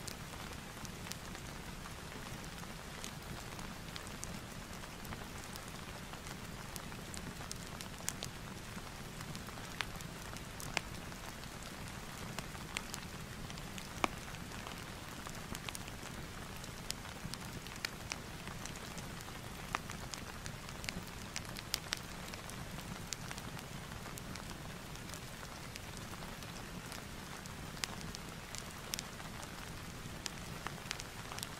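Steady rain falling, mixed with the scattered sharp crackles of a wood fire.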